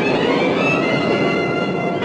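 Orchestral film-score music with strings holding long, steady chords over a dense, noisy texture.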